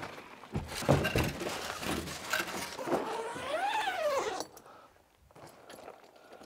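Padded board bag being pulled out of a tall cardboard box and set on the floor: irregular rustling, scraping and knocks against the cardboard. Late in the handling there is a brief tone that rises and falls, and the sounds stop about four and a half seconds in.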